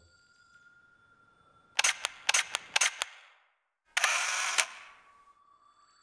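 Camera shutter clicks: a quick run of about five sharp clicks, then after a short pause a half-second burst of noise ending in a click, in otherwise near-quiet.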